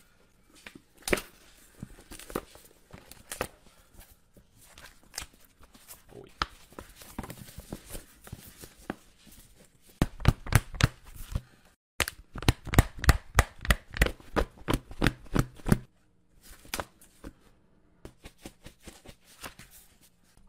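A stiff new thick paperback being broken in by hand: paper crackling and creaking as its pages and spine are flexed open. About halfway through comes a fast run of sharp paper ticks, about five a second, for several seconds, with a short break.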